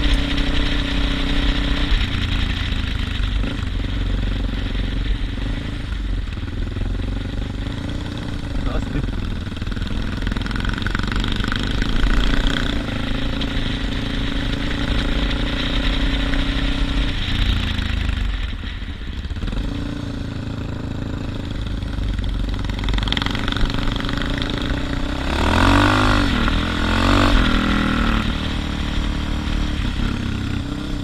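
Suzuki DR650's single-cylinder four-stroke engine running while under way on a dirt road, with tyre and wind noise. The engine eases off briefly about two-thirds of the way through, and its pitch rises and falls a few times near the end.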